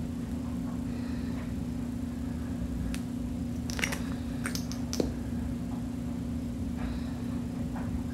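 Soft, wet clicks of lips coated in sticky lip oil pressing together and parting, a few of them clustered in the middle, with the applicator being dabbed on the lips. A steady low hum lies under it all.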